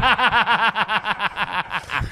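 Men laughing hard: a long run of quick, evenly spaced laughs, about nine a second, that trails off near the end.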